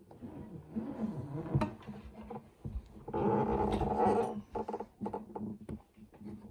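A drawn-out voice-like sound with a wavering pitch, loudest for just over a second midway, among scattered clicks and knocks.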